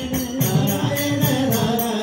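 Live devotional bhajan: voices singing together with tabla, its bass drum gliding in pitch on each stroke, and jingling hand percussion keeping a steady, even beat.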